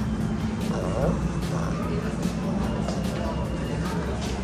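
Indoor room ambience: a steady low hum with indistinct voices in the background.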